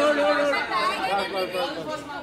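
Several voices talking and calling out over one another: the crowd chatter of photographers and onlookers.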